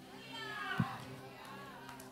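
A child's high voice in the congregation, brief and falling in pitch, over a steady low hum. There is a soft thump about halfway through.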